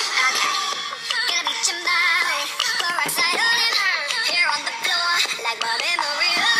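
Pop song playing: a female voice singing with wavering held notes over backing music.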